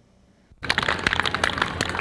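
Near silence, then about half a second in live show-ring sound cuts in abruptly: a dense crackling noise of many small knocks and clicks.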